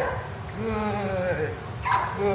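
Vizsla puppy whining in long, wavering tones, with a sharp click near the end.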